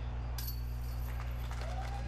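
Faint metallic jingle of disc golf basket chains catching a short putt, over quiet outdoor sound and a steady low hum.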